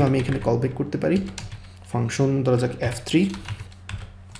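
Typing on a computer keyboard: a scattered run of key clicks as a line of code is entered.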